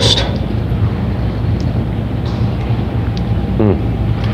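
Steady low hum with an even hiss over it, the constant background noise of the room; a man murmurs 'mm' near the end.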